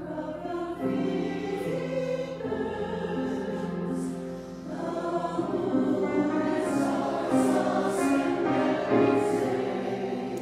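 Church choir singing in parts, holding sustained notes that change about once a second.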